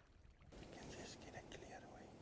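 Faint whispering voices over low outdoor background noise, starting abruptly about half a second in after near silence.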